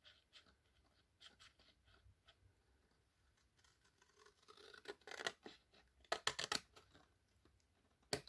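Scissors cutting through cardstock: faint at first, then several short, sharp snips about five to six and a half seconds in.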